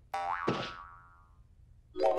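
Cartoon boing sound effect for a bouncing jump: one springy twang that rises briefly, then slides down in pitch and fades away over about a second and a half.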